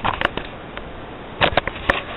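Handling noise on a handheld camera: a few sharp clicks and knocks from fingers on the camera body, with a quick cluster of them about a second and a half in.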